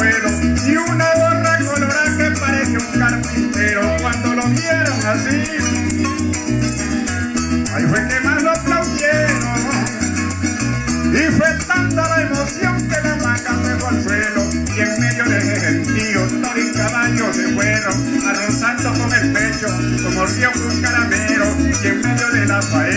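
Llanero band playing an instrumental passage: a llanera harp and cuatro plucking over an electric bass line, with maracas shaking steadily throughout.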